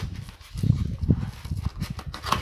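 A parcel wrapped in brown paper and plastic being handled and cut open with a blade: irregular low knocks and scrapes of the wrapping.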